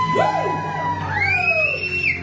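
A woman's singing voice holds a long high note through a microphone over karaoke backing music. Shorter high whoops from other voices rise and fall over it near the end.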